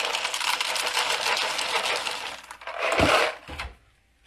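Dry breakfast cereal poured from its box into a bowl, the pieces rattling down in a fast, dense patter. A low thump comes about three seconds in, after which it falls quiet.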